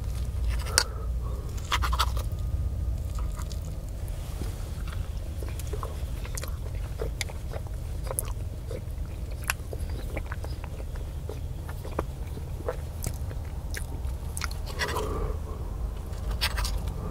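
Close-miked chewing of soft egg-and-cheddar pancakes, with scattered light clicks and scrapes of a fork against the plate, over a steady low rumble.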